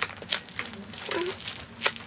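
A small plastic bag stuffed with cotton being squeezed and handled: crinkling with scattered sharp crackles, the sharpest one near the end.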